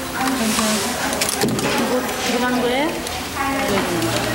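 Several women switchboard operators talking at once, their voices overlapping, with scattered sharp clicks.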